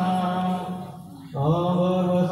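A single voice chanting a devotional mantra in long held notes. It breaks off for a moment about a second in, then takes up the chant again.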